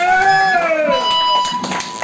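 Several long, wailing voices howling or whooping at the end of a live rock song, each gliding up and then sliding down in pitch. A steady high tone comes in about halfway through, and a few knocks follow near the end.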